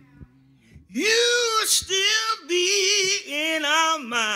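A solo gospel singer's voice: after a pause of about a second it comes back in, holding long notes with heavy vibrato.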